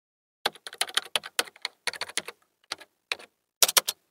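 Computer keyboard typing sound effect: a quick run of key clicks in uneven bursts with short pauses, matching text being typed into a search bar on screen.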